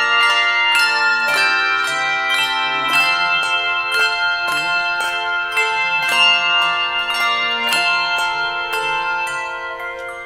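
Handbell choir playing: handheld brass handbells struck in a steady rhythm of about three notes a second, their chords ringing on over one another.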